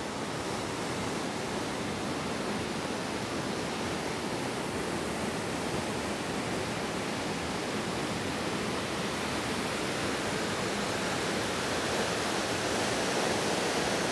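Steady rush of water flowing below a dam, growing slightly louder near the end.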